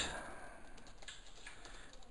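A few faint keystrokes on a computer keyboard, the sharpest one right at the start.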